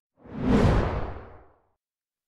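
A whoosh transition sound effect: one noise swell that rises quickly, then fades out over about a second, with a low rumble under it.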